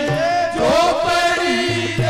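Men singing a Rajasthani devotional folk bhajan, a lead voice with others joining in, over hand-drum accompaniment.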